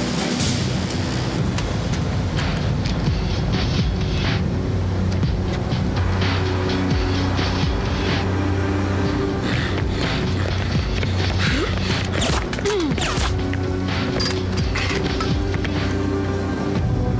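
Tense film score with a sustained low drone, overlaid with frequent short sharp hits.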